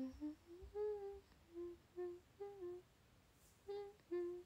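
A young woman softly humming a short tune with her mouth closed, a string of brief notes that rise and fall with small gaps between them.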